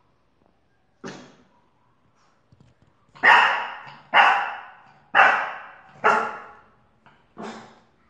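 Small French bulldog barking: one bark about a second in, then four loud barks about a second apart and a quieter last one near the end. It is barking at the doorway, where the owner finds nothing.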